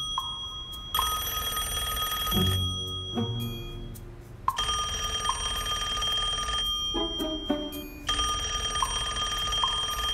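Landline telephone bell ringing three times, each ring about two seconds long with short pauses between.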